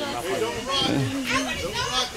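Overlapping voices of people talking among themselves, with no clear words.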